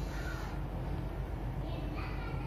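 Faint bird calls, twice, over a steady low background hum.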